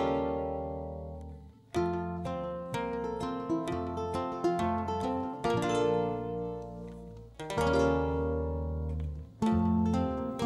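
Two ukuleles and an electric bass playing an instrumental intro: plucked chords over sustained bass notes, with a strong new chord every couple of seconds and single picked notes between.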